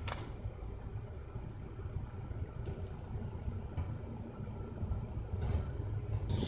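Steady low rumble of a vehicle engine idling, heard from inside the car's cabin.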